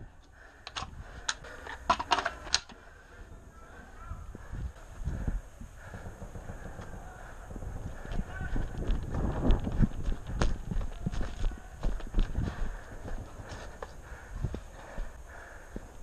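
Several sharp paintball marker shots about one to three seconds in. After them come irregular low thuds and rustling of a player moving about with his gear.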